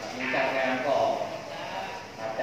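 A man speaking into a handheld microphone, his voice coming through a PA system and echoing in a large hall.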